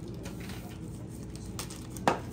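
Quiet kitchen room noise with a few faint light taps, the clearest about one and a half seconds in, as baking powder is tipped from a small cup into a glass mixing bowl of flour.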